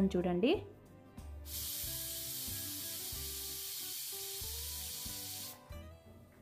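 Stainless steel pressure cooker venting steam through its weight valve: a steady high hiss that starts suddenly about a second and a half in and cuts off suddenly after about four seconds.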